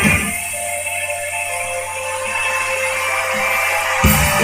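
Live rock band music in a breakdown: just after the start the drums and bass drop out, leaving a steady held chord, and the full band comes back in loudly at the very end.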